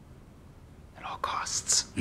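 Quiet room tone, then about a second in a woman asks softly, almost in a whisper, "At all costs?"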